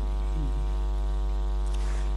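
Steady electrical mains hum: a constant low buzz with a stack of even overtones, unchanging throughout.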